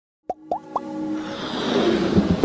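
Intro sound effects for an animated logo: three quick plops, each gliding upward in pitch, about a quarter second apart, followed by a swelling music riser that builds in loudness.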